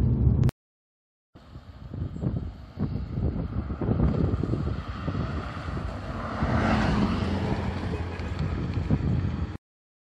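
A 2009 Mazda RX-8 R3 with a six-port Wankel rotary engine drives up and pulls in close by. Engine and tyre noise rise from about a second in and are loudest around seven seconds in as the car comes nearest. The sound cuts off suddenly just before the end.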